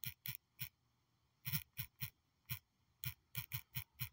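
Typing on a phone's touchscreen keyboard: about a dozen quick, irregular taps, one for each key pressed, with a short pause about a second in.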